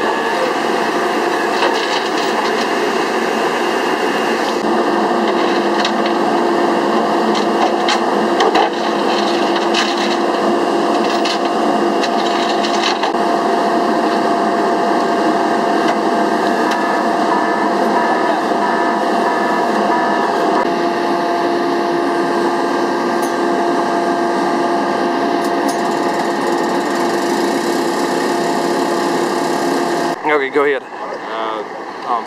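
An engine running at a constant speed with a steady droning hum, with a few short knocks in the first half.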